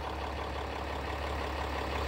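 Ram 3500's 6.7-litre Cummins turbo diesel idling, a steady low hum.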